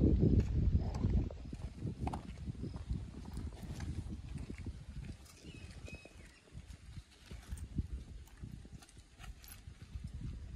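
Low wind rumble on the microphone for about the first second, then a scatter of small crackles and knocks close to the microphone as a Labrador dog shifts about on dry grass and twigs.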